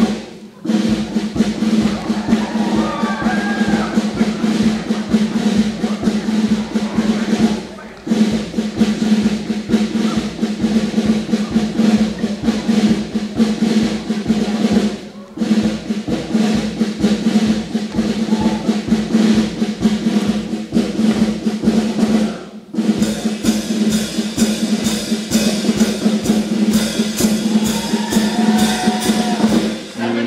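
Marching-band style stage music with snare drum rolls and bass drum playing over a steady sustained accompaniment, the drumming broken by brief gaps about every seven seconds.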